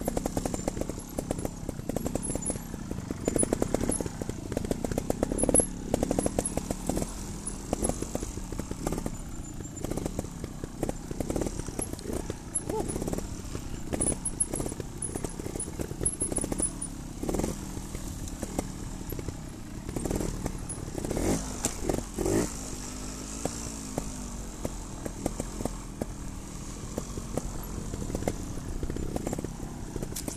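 Trials motorcycle engines running at low revs over rough ground, with frequent knocks and rattles from the bike over bumps. There are a few short blips of the throttle about two-thirds of the way in.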